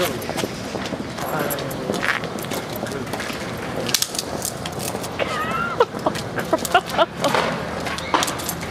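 People's voices exclaiming over street noise, with a run of short, sharp knocks in the second half.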